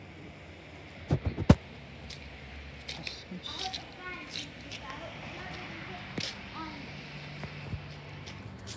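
A few sharp knocks on a handheld iPad's microphone about a second in, the loudest a moment later, then scattered softer clicks and faint voices: handling noise as the tablet is carried.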